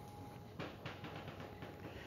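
Quiet room hum with a few faint footsteps on a hard floor.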